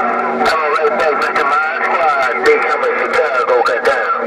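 President HR2510 radio's speaker playing a crowded 27.085 MHz channel: several distant voices talking over one another, garbled and thin, with steady whistling tones laid over them. The signals are long-distance skip from far-off stations.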